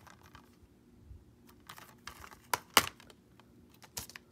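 Plastic Blu-ray case being handled and opened: a few scattered sharp clicks and taps, the loudest about three quarters of the way through.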